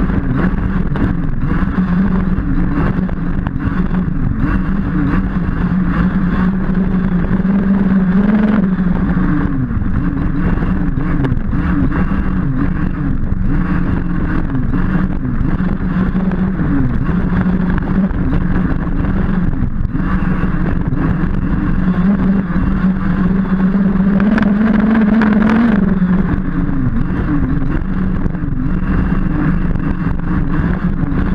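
Losi DBXL 1/5-scale buggy's 29cc two-stroke petrol engine running hard, heard from a camera mounted on the buggy, its pitch rising and falling with the throttle. It climbs to a peak about eight seconds in and again near the end, with a brief dip about twenty seconds in.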